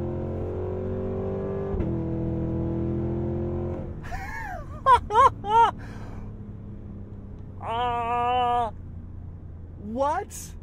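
Cadillac Escalade V's supercharged 6.2-litre V8 at full throttle with its exhaust baffles open, heard from inside the cabin: the pitch climbs steadily, breaks briefly at an upshift about two seconds in, and the engine falls away just before four seconds as the throttle lifts. A few loud short whoops and then a held wavering note follow, a man's voice.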